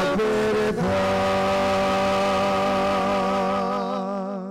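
Sung Gospel acclamation with accompaniment, closing on one long held note from about a second in that starts to waver near the end.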